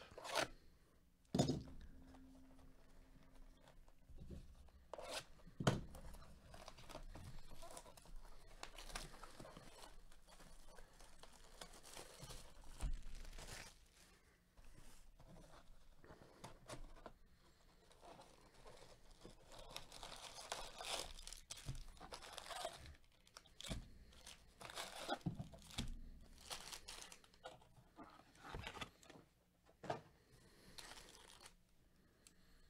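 Plastic shrink wrap being slit and torn off a cardboard hobby box of trading cards, with crinkling and rustling plastic and a few sharp knocks in the first six seconds.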